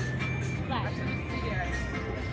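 Passengers talking inside a moving city bus, over background music and the vehicle's steady low hum.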